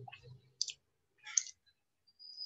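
Two short, sharp clicks a little under a second apart, over a faint low hum that fades out early.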